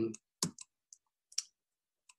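The end of a spoken 'um', then four or five short, sharp clicks spaced irregularly over about a second.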